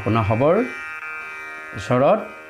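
A man's voice speaking a short phrase, then a pause filled by a steady background music drone of several held tones, before his voice returns near the end.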